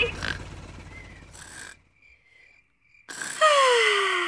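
Cartoon helicopter flying away, its rumble fading out over the first two seconds. After a short near-silence with faint high chirps, a loud drawn-out vocal sound falling steadily in pitch comes in near the end.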